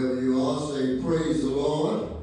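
A man singing slowly into a microphone, holding long notes that rise in pitch near the end.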